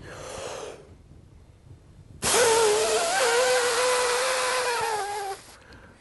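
A quick breath in, then a strong, steady exhale through pursed lips lasting about three seconds, with a pitched whistling tone through the lips. The tone is the sign that the lips are squeezed too tight for a pure air-control breathing exercise.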